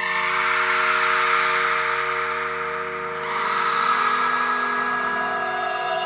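Intro of an electronic deathstep remix: a held chord of steady synth tones under a noisy wash. The top of the wash drops away about three seconds in.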